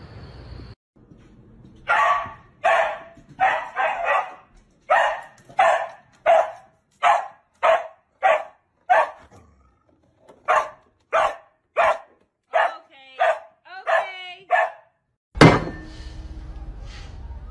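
A dog barking steadily and repetitively, about one and a half barks a second, for most of the time. The last few calls bend in pitch, more like yelps.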